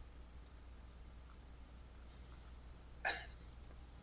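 Quiet microphone room tone with a low steady hum, broken about three seconds in by one short breathy noise from a person at the microphone, like a quick intake of breath.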